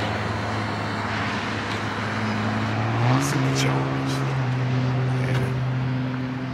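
An engine running steadily with a droning hum, its pitch stepping up a little about three seconds in.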